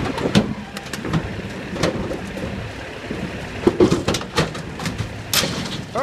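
Heavy wrecker trucks' engines running steadily under load as their cables drag an overturned 18-wheeler's trailer upright, with scattered snaps, cracks and pops from the straining, tearing trailer body. The loudest crack comes about five seconds in.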